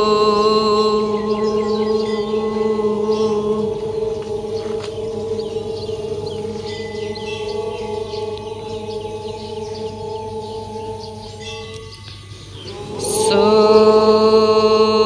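A large group of voices chanting a prayer in unison on long held notes, fading gradually, then breaking off briefly for breath and resuming loudly near the end. Birds chirp faintly behind the chant.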